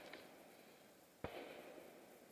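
Near silence between rifle shots, with one faint sharp click a little over a second in.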